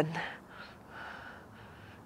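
A woman's soft, faint breath, one airy breath running from about half a second to a second and a half in, after the last spoken word fades.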